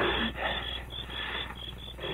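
Radio-drama night ambience of crickets chirping, a steady run of short high chirps, under a weak, sick man's heavy breathing.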